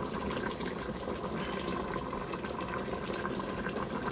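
Fish in coconut-milk broth boiling in a pot on the stove, a steady bubbling and crackling.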